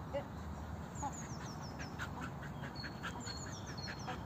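Birds calling outdoors: a quick run of short, high notes, each falling in pitch, about a second in and again near the end, with scattered shorter calls between.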